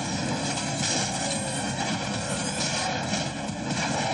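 Cartoon sound effects of robot parts flying together and combining: a steady mechanical rushing with a hum of many held tones.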